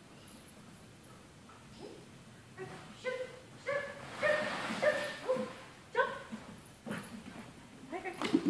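A dog giving a string of short, high-pitched barks, about eight in quick succession, starting a couple of seconds in.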